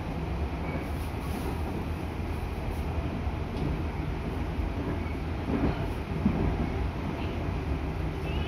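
Cabin noise of a JR Central 211 series electric train car running along the line: a steady low rumble of wheels on rail, with a few louder knocks from the running gear a little past the middle.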